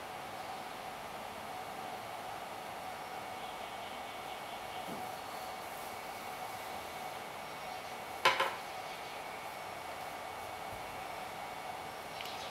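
Steady low hum of a quiet workshop, with one sharp, short knock a little past eight seconds in, typical of a wooden dowel tapping against something hard as it is handled.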